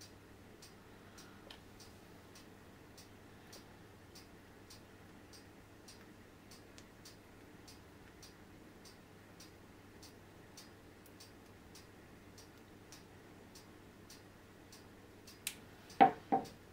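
Near silence: faint, evenly spaced ticking, about three ticks every two seconds, over a low steady hum, with one sharper click near the end.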